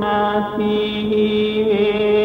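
Chant-like music: held vocal tones over a steady low drone, the pitch shifting briefly about halfway through and again near the end.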